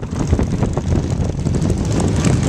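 Motorcycles running on the move, a continuous low engine rumble mixed with wind rushing across the microphone.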